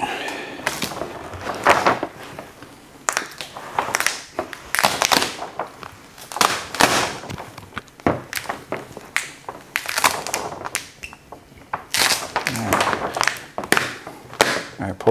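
Carbon-fibre vinyl wrap film being worked onto a car hood: an irregular run of short scraping and crinkling strokes from a soft squeegee on the wet film and the backing liner being peeled away.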